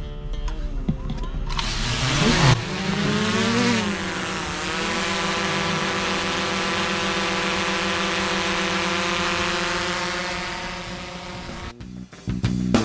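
DJI Mavic 2 Zoom quadcopter's propellers going up to full speed at hand launch: a sudden loud high buzz about a second and a half in, dipping and rising in pitch as the drone climbs away, then holding steady and fading near the end.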